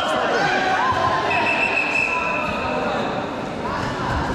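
Voices echoing in a large sports hall, with a faint steady high-pitched tone held for about two and a half seconds from about a second in.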